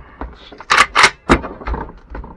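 A WASR-10 AK-pattern rifle being handled and shifted on a work mat, giving about four short knocks with rubbing in between.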